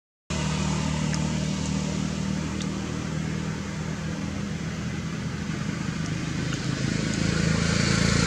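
A motor vehicle's engine running with a steady low hum, cutting in about a third of a second in and growing louder toward the end as it comes closer.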